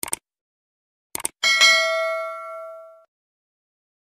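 Subscribe-button animation sound effect: short clicks at the start and again just over a second in, then a single bright notification-bell ding that rings out and fades over about a second and a half.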